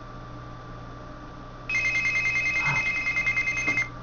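Electronic alarm ringing, a fast-trilling two-note tone that starts a little under two seconds in and lasts about two seconds. It is a timer signalling that ten minutes are up.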